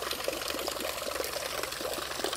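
A thin stream of water falling from a rubber tube into a plastic tub, splashing and pattering steadily.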